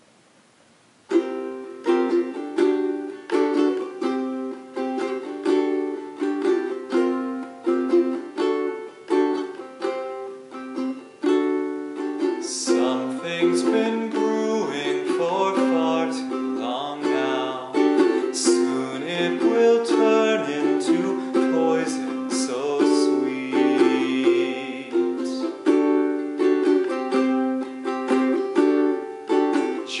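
Ukulele strummed in a steady rhythm, starting about a second in. A man's singing voice joins over it around the middle.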